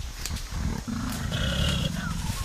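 Mountain gorilla giving a low, rough call that starts about half a second in and carries on.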